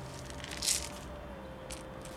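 Akadama granules poured from a small plastic cup onto the substrate in a terracotta pot: a short gritty rush about two-thirds of a second in, then a few faint crunches near the end.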